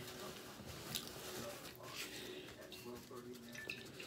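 Faint chewing and wet mouth sounds of a person eating, with a few soft clicks and a short closed-mouth hum about three seconds in.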